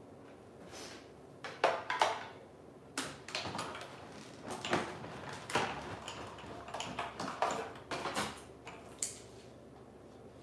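Off-camera handling at a manual die-cutting machine: an irregular string of clicks, knocks and rustling as the cutting plates, dies and cardstock are handled and run through, the sharpest knocks about one and a half to two seconds in.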